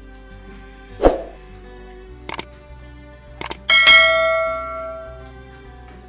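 Soft background music, with a subscribe-button animation sound effect laid over it: a knock, a few mouse-like clicks, then a bright bell ding that rings out and fades over a second or so.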